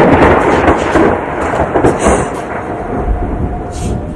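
Thunder sound effect: a loud rumble of thunder with a hissing, rain-like wash, slowly fading over the seconds.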